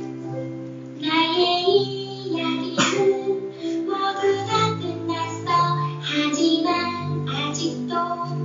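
Music: a song sung by children's and women's voices over instrumental accompaniment. The singing comes in about a second in over held notes.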